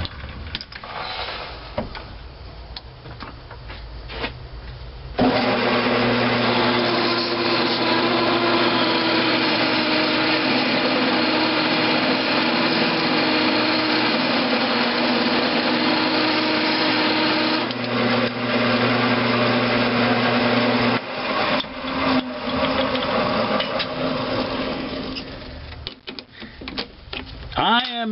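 Metal lathe starting about five seconds in and running steadily, with a drill bit feeding into a cast iron valve head held in the three-jaw chuck. The motor stops about 21 seconds in, and the spindle runs down into irregular clatter as the chuck is handled.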